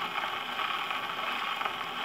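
Gramophone needle running on a spinning 78 rpm shellac record once the song has ended, giving a steady hiss with crackle of surface noise and no music.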